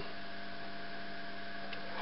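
Steady electrical hum with a few constant tones over a faint hiss, unchanging throughout.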